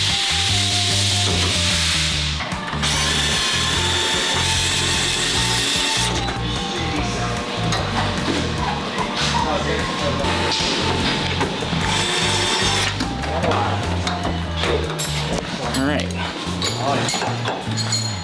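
DeWalt cordless screwdriver running in several bursts of a few seconds as it drives and backs out bolts in the floor of a race car chassis, over background music with a steady beat.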